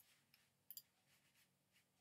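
Faint computer clicks as the on-screen pointer is clicked: a sharp click at the start, a lighter one just after, then a quick double click, over near-silent room tone.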